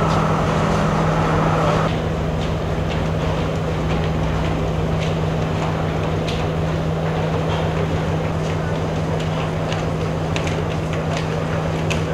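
Steady low drone of an idling diesel train engine, with the murmur of a crowd on the platform over it.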